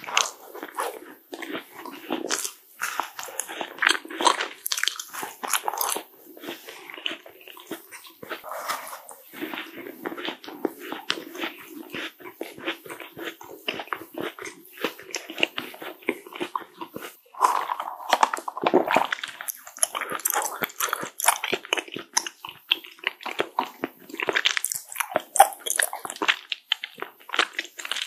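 Close-miked bite into a green macaron, followed by continual chewing: many small crisp crunches and wet mouth clicks in an irregular stream.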